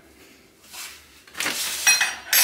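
Plastic supplement pouch rustling and crinkling as it is picked up and handled, starting about halfway through, with a sharp click near the end.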